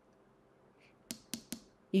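A quiet pause, then three short, sharp clicks in quick succession in the second half.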